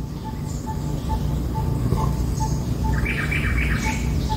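Birds calling: one bird repeats a short single-note call evenly, a few times a second, and a brief run of higher chirps comes in near the end.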